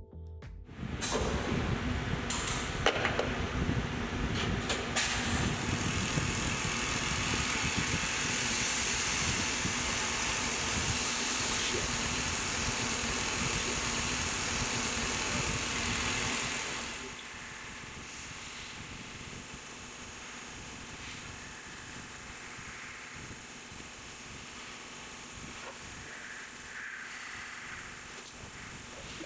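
Tormach CNC mill machining an aluminium plate: steady spindle and cutting noise with a strong hiss, which drops sharply to a quieter steady run about two-thirds of the way in.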